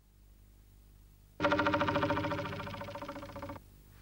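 Near silence for over a second, then a cartoon sound effect: a held chord pulsing about ten times a second, fading for about two seconds and cutting off suddenly.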